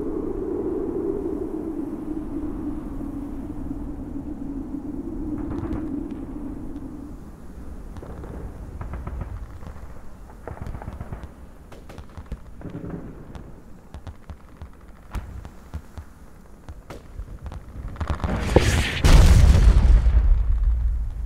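Film sound design: a steady low drone, then scattered sharp cracks, and about a second and a half before the end a loud explosion with a deep, lingering rumble, marking the attack on the base.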